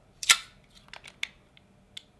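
Stapler being handled and worked open: a sharp snap about a quarter second in, then a few light clicks, and another click near the end.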